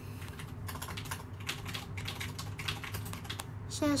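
Typing: a quick, irregular run of small finger taps close to the microphone.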